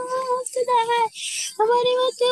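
A young, high voice singing long held notes, wordless or nearly so, in short phrases with brief breaks; a breathy hiss comes between phrases just past the middle.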